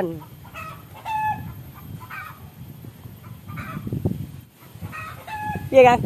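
Chickens clucking in short calls now and then, over the low scraping of a hoe working a heap of sand mix.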